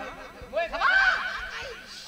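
A short laugh from one person, starting about half a second in and trailing off over about a second.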